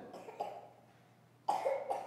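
A person coughing once, about one and a half seconds in, a short sharp burst that dies away quickly.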